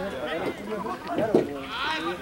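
Several voices shouting and calling over one another at once: rugby players and spectators calling out during play at a ruck.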